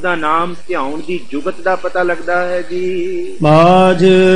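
A man's voice intoning Punjabi scripture in a sing-song, half-spoken way, then breaking into louder, held singing of a gurbani line about three and a half seconds in.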